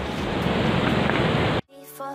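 Wind rushing on a phone's microphone: a steady, loud noise that cuts off abruptly shortly before the end, where music begins faintly.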